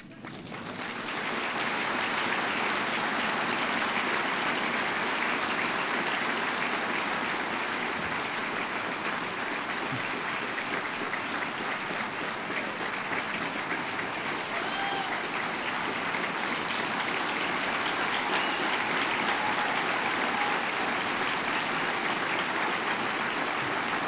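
Audience applauding steadily, swelling in over the first second or two and then holding at an even level.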